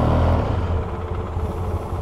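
Polaris Sportsman 700 Twin ATV's twin-cylinder engine running at low speed, easing back about half a second in and then running steadily at idle.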